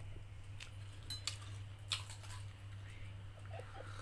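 Someone biting into and chewing a crisp fried samosa: a few faint, short crunchy clicks over a steady low hum.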